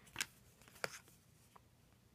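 Trading cards handled by hand, the card stock sliding and flicking as cards are moved to the front of the stack: two short, crisp rustles, one just after the start and one a little before a second in, then a faint tick.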